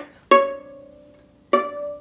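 Viola plucked pizzicato: two single notes about a second apart, each starting sharply and ringing out as it fades. They are the D and C-sharp of the exercise.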